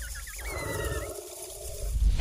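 Produced animal sound effects: a quick, wavering high-pitched call, then a lower roar-like sound lasting about a second and a half.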